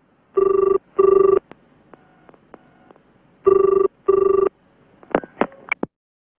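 Telephone ringing in the British double-ring pattern, ring-ring twice. A few sharp clicks near the end, as the receiver is picked up.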